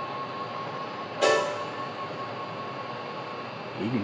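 The 3.5-inch floppy drive of an IBM ThinkPad 380XD spinning and seeking on a dry-type head cleaning disk, its head scraping a little against the cleaning sheet. The drive runs with a steady whine that stops shortly before the end, and there is a louder, pitched burst about a second in.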